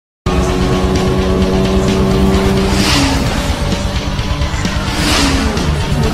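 Sports car engine held at high revs, dropping in pitch with a rush of noise as it passes, about halfway and again near the end, with music underneath.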